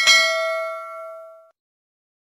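Bell-like notification ding sound effect: one bright ringing chime that fades and cuts off about a second and a half in.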